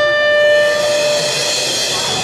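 Electric guitar holding one high note that rings out steadily, with no drums under it; a higher, thinner tone carries on after the note fades, about a second and a half in.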